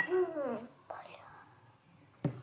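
A sharp click, then a short vocal sound sliding down in pitch over about half a second, with a fainter breathy sound about a second in.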